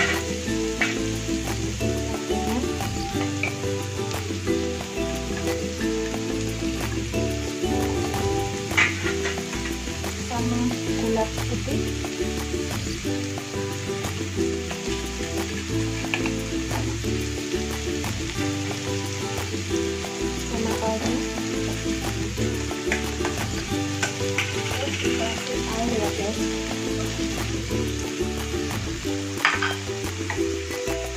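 Diced vegetables and tomato sauce sizzling in a nonstick wok while a wooden spatula stirs and scrapes them, with a couple of sharper knocks of the spatula against the pan. Background music plays throughout.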